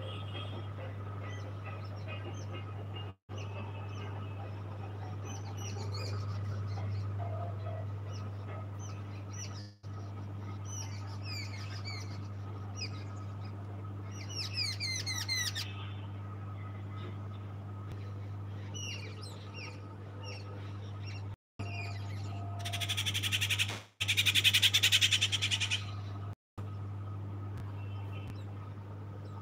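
Small birds chirping and twittering, with a quick run of chirps about halfway through, over a steady low hum. Near the end, a loud harsh rasping noise lasts a few seconds.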